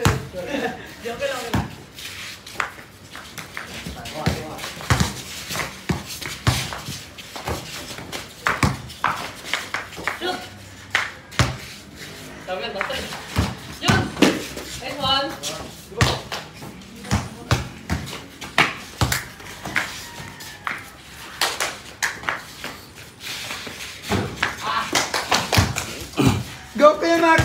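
A basketball bouncing on a concrete court during a pickup game: irregular, sharp thuds of dribbles and passes, with players' voices calling out between them.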